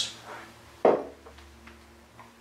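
A glass bottle set down on the kitchen worktop, with a single sharp knock a little under a second in, followed by a few faint clicks of handling.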